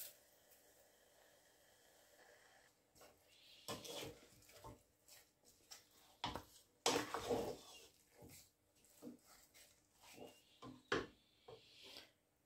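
Hands mixing raw turkey wings with seasonings and chopped onions in a pot: faint, irregular rubbing and handling of wet meat, loudest around four and seven seconds in.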